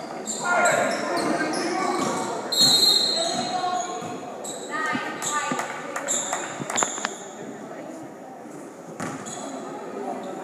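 Basketball game sounds in an echoing gym: indistinct shouts from players and spectators, sneakers squeaking on the hardwood floor and the ball bouncing, with a sharp knock about seven seconds in. It grows quieter over the last few seconds.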